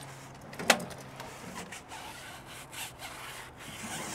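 Stiff tire brush scrubbing a tire's rubber sidewall coated in foaming tire cleaner, a run of back-and-forth scrubbing strokes, with one sharp click a little under a second in.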